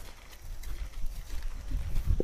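Zebra moving up close, its hooves giving low, dull thumps on the ground that start about half a second in and grow stronger toward the end.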